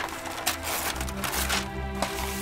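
Wrapping paper being torn and ripped off a long gift box, over background music with steady low bass notes.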